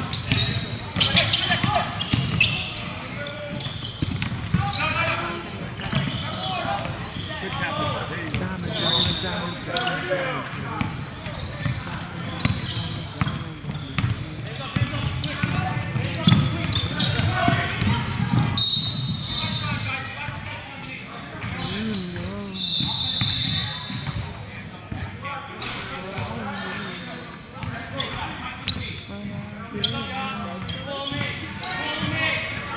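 Basketball game on a hardwood gym floor: a basketball bouncing on the boards under indistinct players' and spectators' voices, echoing in a large hall.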